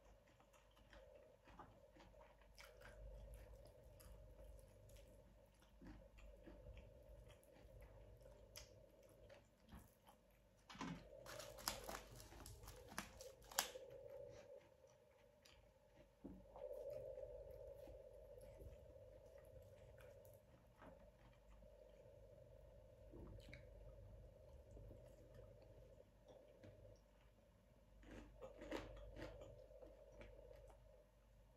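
Faint close-up chewing and mouth sounds of a person eating larb and sticky rice, with small clicks throughout. A louder spell of crackling clicks comes about eleven seconds in and lasts a few seconds.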